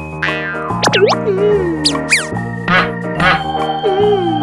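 Children's background music with cartoon sound effects laid over it: a string of springy boings and pitch-sliding swoops, rising and falling several times.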